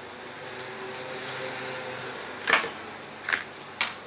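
Crafting handling sounds from a glue bottle and paper card on a cutting mat: a quiet stretch, then three short taps in the second half, the first the loudest.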